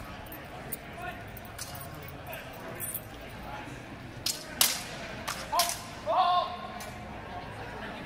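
Steel training longswords clashing in a fencing exchange: about four sharp clacks in quick succession around the middle, followed by a short shout.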